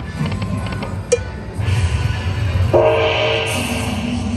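Video slot machine's electronic sound effects during a spin: quick clicking as the reels spin, then a low rumble and a held electronic tone with a hiss in the second half.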